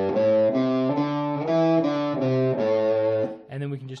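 Ernie Ball Music Man electric guitar playing a run of single notes, about four a second, through the minor pentatonic scale. It goes in groups of four notes, alternating ascending and descending as it shifts from one scale position to the next. A few words of speech come in near the end.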